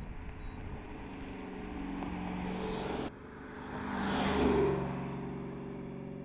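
Dodge Challenger 392 HEMI's 6.4-litre V8 engine running as the car drives by, growing louder on its approach. The sound breaks off sharply about three seconds in, then swells to its loudest as the car passes and fades as it drives away.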